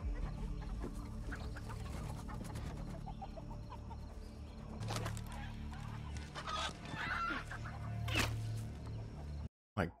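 Chickens clucking and rooster squawks from a TV episode's soundtrack over a low steady hum, cutting off suddenly near the end.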